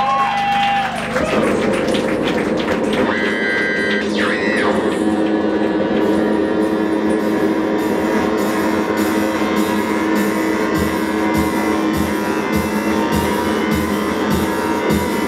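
Live experimental electronic noise music: wavering pitched tones that stop about a second in, then a dense droning wall of sound with steady low tones. About eight seconds in, a regular high ticking pulse of about two a second joins, with low thuds near the end.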